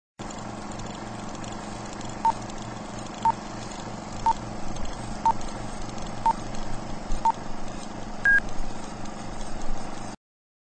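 Vintage film countdown leader sound effect: a short beep once a second, six at one pitch and then a final higher beep, over a steady hum with crackle and clicks. The sound cuts off suddenly at the end.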